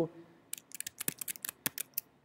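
Computer keyboard keys clicking: a quick, irregular run of about a dozen light taps starting about half a second in, as Tab is pressed repeatedly to step through the Mac app switcher.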